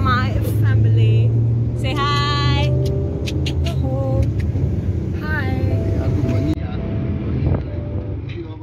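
Excited shouts and laughter from a group of passengers over the steady low rumble of a van's engine and tyres heard inside the cabin, with a few sharp clicks of the phone being handled.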